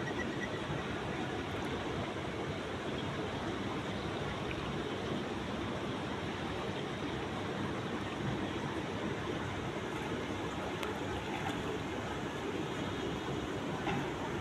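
Steady rushing noise of swimming-pool water, even throughout.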